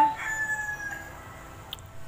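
A rooster crowing in the background; its long drawn-out final note fades within the first second. Then a quiet stretch with a single light click near the end.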